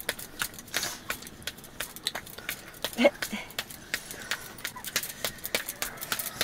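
Irregular sharp clicks and crackles, several a second, in a kitchen where a family is eating by hand from steel bowls. About three seconds in there is a brief vocal sound.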